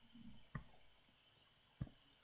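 Two sharp clicks from a computer's pointing device, a little over a second apart, as the notes page is scrolled; a soft low rustle just before the first.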